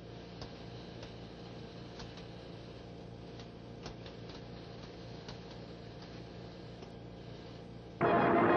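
Steady hiss and low hum with scattered faint clicks: the background noise of the open air-to-ground radio link between transmissions.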